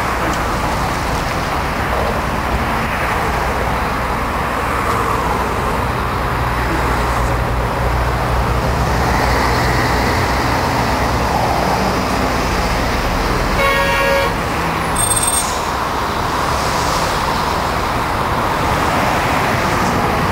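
Steady traffic noise from cars passing on a busy highway, with a short car horn toot about two-thirds of the way through.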